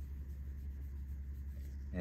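Faint rubbing of a microfiber towel, damp with mineral spirits, wiped over the metallic-finished surface of a 3D-printed mask, under a steady low hum.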